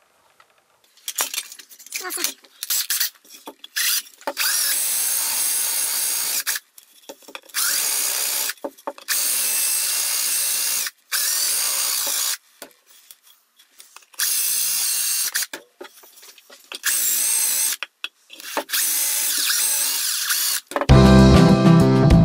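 Cordless drill boring through a wooden jig board in about seven short bursts, its motor whine wavering as the bit cuts; the holes are being redrilled because the first ones went in crooked. Music comes in about a second before the end.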